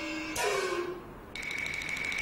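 Kunqu opera stage music: a held pitched note that slides downward and fades about a second in, then a single high steady tone over a fast, even run of light ticks from a little past halfway.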